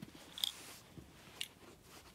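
A metal replica lightsaber hilt being handled and turned in the hand, giving a couple of faint light clicks about a second apart.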